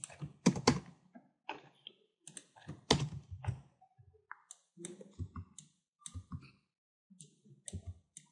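Computer keyboard typing: irregular key taps and clicks, the loudest about half a second in and around three seconds in.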